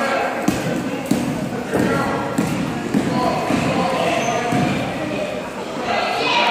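A basketball bouncing on a gym floor: a few sharp, irregular bounces, about half a second, one second and three seconds in, over indistinct voices.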